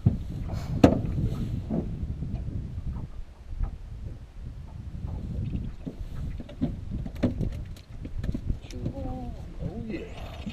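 Wind rumbling on the microphone in an open fishing boat, with sharp knocks and clicks from handling gear on the boat, the loudest about a second in and a few more around seven seconds in.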